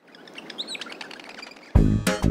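Birds chirping softly over a faint outdoor hiss. Loud, bouncy music with a beat and plucked notes starts abruptly about three-quarters of the way through.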